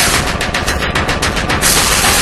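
Dark electro / EBM track from a DJ mix: a run of rapid, evenly spaced noisy hits, about nine a second, like a machine-gun stutter. The full dense mix comes back near the end.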